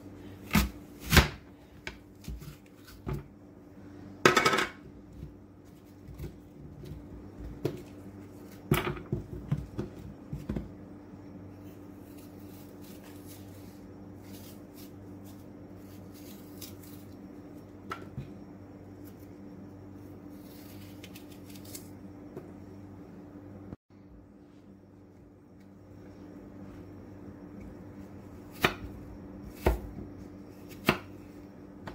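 Apples being cut on a wooden cutting board: an apple slicer-corer pressed down through the fruit with sharp knocks and crunches in the first ten seconds, then softer scraping as the wedges are peeled with a knife, and a couple of knife strokes knocking the board near the end.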